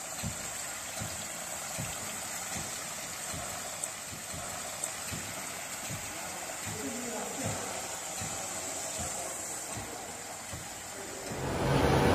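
Filtrate water pouring from the outlet taps of a plate-and-frame filter press into a collecting trough, a steady splashing with regular low thuds about every 0.8 seconds from the strokes of the air-operated diaphragm pump feeding the press. A louder steady machine hum comes in near the end.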